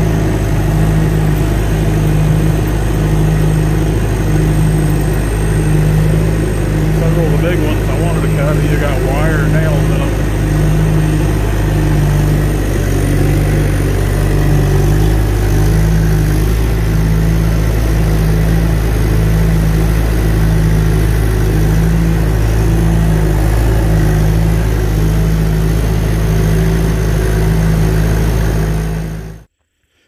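Log skidder's diesel engine running steadily as the machine drives, heard from the operator's seat, with a slow regular throb a little under once a second. A brief wavering higher sound comes over it about a third of the way in, and the sound cuts off suddenly near the end.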